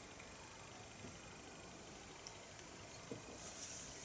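Near silence of a small room while beer is sipped from a glass, with a faint tap about three seconds in as the stemmed glass is set down on a cloth-covered table.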